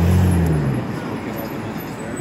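Busy city street traffic noise as a streetcar approaches. A low, steady hum lasts about the first second, rising slightly and then falling away.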